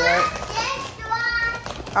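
A young child's high-pitched voice calling out without clear words, twice, the second call held on a steady high note.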